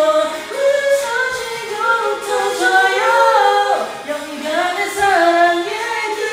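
Music with singing: several voices in harmony, holding notes and sliding between pitches.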